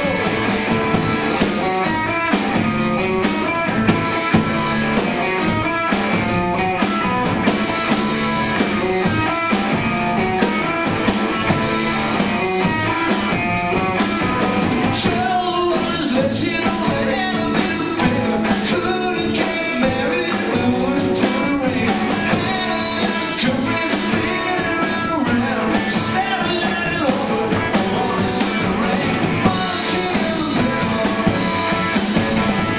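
Live rock trio playing a song: electric guitar, electric bass and drum kit, with a steady driving beat.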